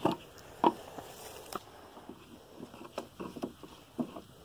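Cap being opened on a white plastic water jug and the jug handled: a few light plastic clicks and knocks amid soft rustling.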